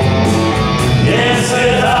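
Live band music: electric guitars and keyboard playing the song, amplified through stage speakers at a steady, loud level.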